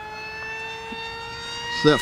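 RC foam plane's 2400 kV brushless motor and 6x5.5 propeller on a 4S pack, in flight: a high-pitched whine with many overtones, its pitch creeping slowly upward. The motor is pushed hard on the higher-voltage pack, with a sound the fliers call meaner.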